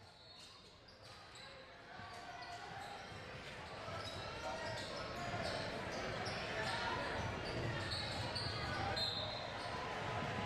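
Indoor basketball game sounds in an echoing gym: a basketball bouncing on the hardwood floor and shoes squeaking, over the chatter of players and spectators. The noise builds over the first few seconds and then stays steady.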